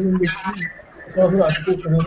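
Indistinct talking: a man's voice speaking in short phrases in a room, words not made out.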